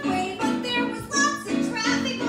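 A high voice singing a musical theatre song live, accompanied on an electric keyboard playing short, rhythmic notes.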